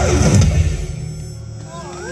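Live rock band ending a song: the full loud music stops about half a second in, leaving a low tone that fades away. Near the end the crowd starts to whoop and cheer.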